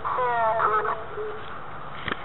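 A high, wavering, voice-like utterance about a second long from an EVP ghost-box app. The app renders it on screen as the word "cross".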